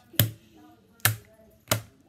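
Homemade slime being stretched between the hands, giving three sharp snaps or pops spaced about three-quarters of a second apart.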